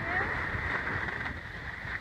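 Steady rushing of skis gliding over packed snow, mixed with wind on the microphone.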